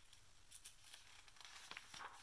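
Faint rustle of a picture book's paper pages being handled and turned, with a few soft crinkles about half a second in and again near the end.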